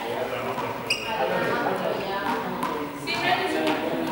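Indistinct voices of several people talking in a large, echoing hall, with a couple of light knocks.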